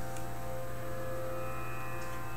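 A steady drone of several held tones over a low hum, unchanging throughout.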